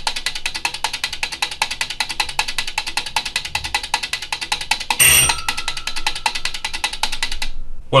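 Relays of a single-board relay computer clicking in a rapid, even rhythm as it runs a program loop. About five seconds in, an old-style bell wired to the computer's output relay rings briefly and leaves a ringing tone for about two seconds. The clicking stops suddenly just before the end.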